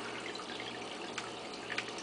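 Steady trickle of circulating aquarium water, with a constant low hum and a few faint ticks.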